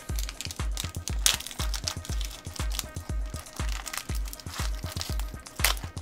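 Foil wrapper of a Pokémon card booster pack crinkling and tearing in sharp crackles as a hard-to-open pack is worked open by hand. Background music with a steady low beat, about three a second, runs underneath.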